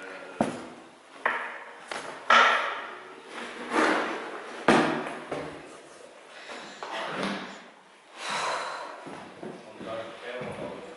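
Footsteps scuffing and crunching on a debris-strewn floor, with several sharp knocks spread irregularly through the first five seconds.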